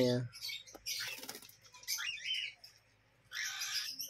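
Cockatiels making a few short, soft chirps amid brief bursts of rustling, flapping-like noise.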